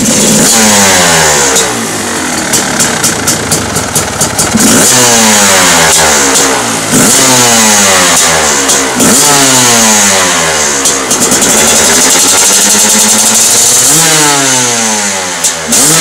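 A 2012 GAS GAS EC 300's single-cylinder two-stroke engine, breathing through a LeoVince X3 slip-on silencer, revved on the stand. About six sharp throttle blips each rise quickly and fall away, with a choppy, stuttering stretch of low revs between two and four seconds in.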